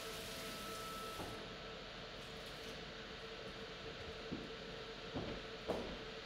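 Electric pottery wheel running with a steady hum and hiss while a lump of wet clay is worked on the spinning wheel head by hand, with a few faint knocks in the second half.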